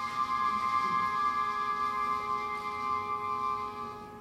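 A symphonic band holding one long, steady chord, which slowly grows quieter near the end.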